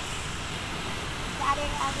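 Steady rush of surf on the beach, with wind rumbling on the microphone.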